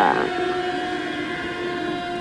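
Film-score drone: a steady chord of held high tones that does not change, with the tail of a croaked voice right at the start.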